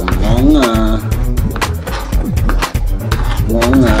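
Self-composed backing music made in MAGIX Music Maker, with a steady, evenly spaced beat, and a woman's brief 'uh' under a second in.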